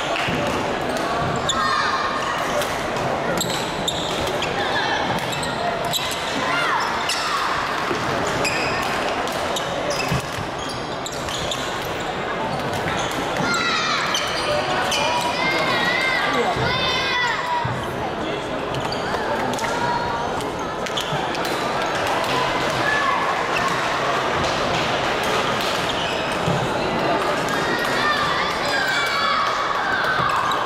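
Badminton hall ambience: repeated sharp racket strikes on shuttlecocks and footfalls on the wooden court floor, over indistinct chatter of many voices in a large, echoing hall.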